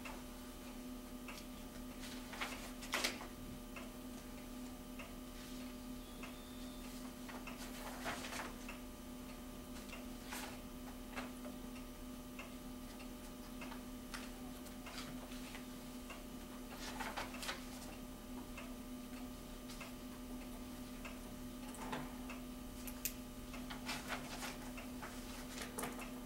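Quiet room tone with a steady low hum and light ticking, broken a few times by short rustles of paper pages being handled and turned.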